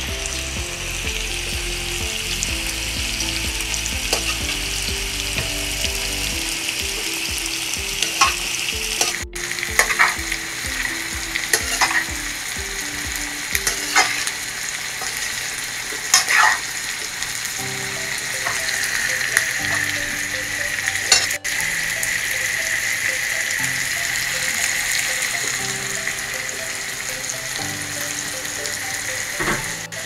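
Rice and vegetables sizzling as they fry in a large metal pot, with a slotted metal spoon scraping and knocking against the pot every so often as the mixture is stirred.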